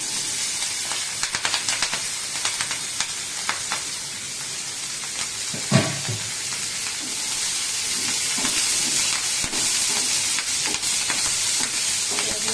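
Chopped green chillies dropped into hot oil in a kadai, setting off a sizzle that starts suddenly and keeps going as they are stirred with a wooden spatula. Scrapes and ticks of the spatula on the pan come through the sizzle, with one louder knock a little before halfway.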